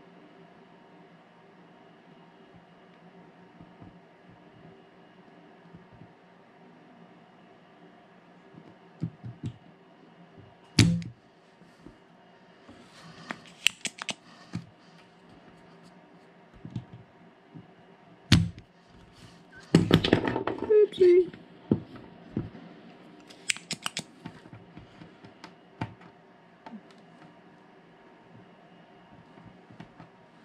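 Spring-loaded desoldering pump (solder sucker) snapping as its plunger fires at a molten solder joint, with a few sharp clicks and a short clatter of handling and re-cocking, over a faint steady hum.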